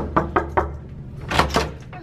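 Knocking on a door: a few quick raps at first, then two louder knocks about a second and a half in.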